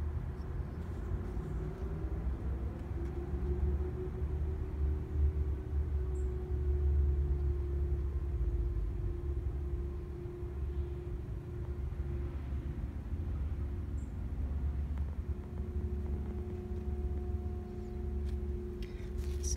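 Steady low rumble throughout, with a faint steady hum over it.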